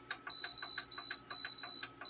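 Cuisinart countertop cooktop's control panel beeping about five times in quick, even succession, each short high beep led by a light tap of a finger on the touch pad, as its timer is stepped up.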